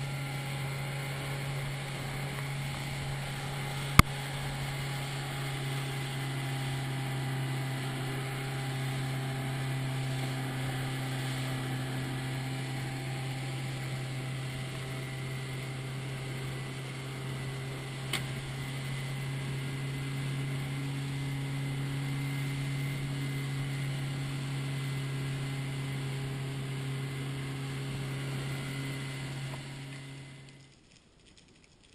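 Boat's outboard motor running at a steady cruising speed, a constant drone. A sharp click about four seconds in and a fainter one near the middle.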